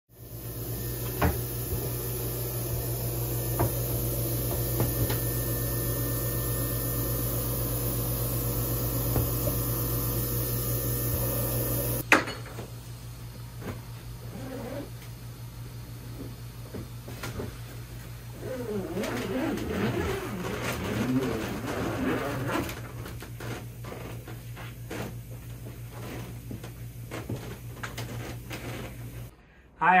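Machines running to pressurize a soft-shell hyperbaric chamber: a steady hum with hiss, loud at first, then cut down to a quieter steady hum. The quieter part has scraping and rustling as the chamber is handled.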